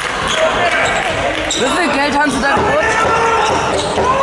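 A handball bouncing on a sports-hall floor as it is dribbled during play, with voices calling out over it.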